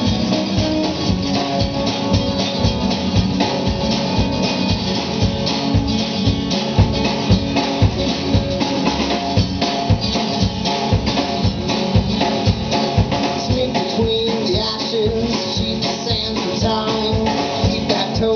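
Live country-rock band playing an instrumental passage: strummed acoustic guitar, electric guitar, upright bass and a drum kit keeping a steady beat.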